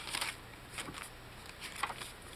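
Paper rustling as a tag is slid out of a paper-bag pocket and a journal page is turned: a few short, soft brushes of paper.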